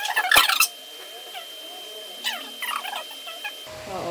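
Sped-up audio from fast-forwarded footage: voices squeezed into high, squeaky chipmunk-like chatter, with a loud cluster of sharp sounds in the first half-second.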